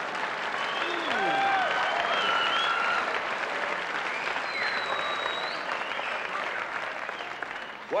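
Live audience applauding and laughing after a punchline, with individual voices rising out of the crowd noise. It tapers off near the end.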